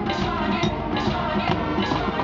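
High school marching band playing its field show: brass and front-ensemble percussion together, over a steady beat.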